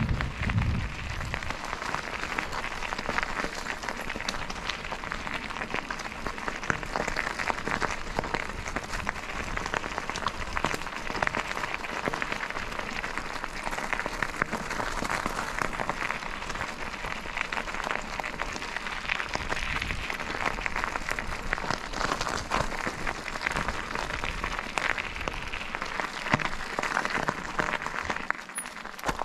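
Bicycle tyres rolling over the loose gravel of a rail grade: a steady, dense crackle of gravel under the wheels, with a low bump in the first second.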